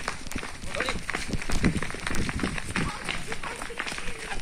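A group of people running on a dirt road: many irregular footfalls, with indistinct voices among the runners.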